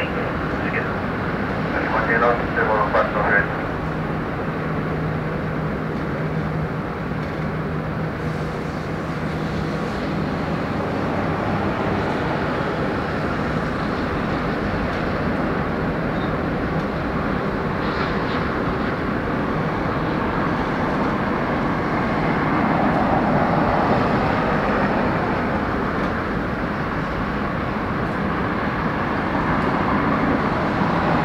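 Steady rumble of airliner jet engines as aircraft taxi across the airfield, swelling slightly near the end. A brief murmur of voices about two to three seconds in.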